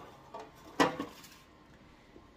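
Old metal baking sheet set down on a stone countertop: a light knock, then a louder, sharper knock with a short ring a little under a second in.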